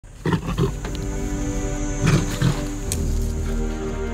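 A male lion growling in short rough bursts, a few near the start and two more about two seconds in, over background music of sustained tones.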